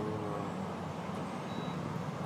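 Steady low rumble of road traffic, with a man's voice trailing off at the very start.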